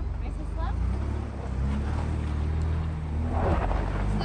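Ford Bronco engine running at low speed, a steady low hum, with faint voices in the background.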